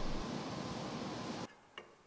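Steady background hiss that cuts off suddenly about one and a half seconds in, leaving near silence.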